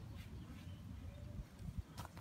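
Faint handling sounds of garden twine being tied around a wooden stake: light rustles and a few soft clicks over a steady low rumble.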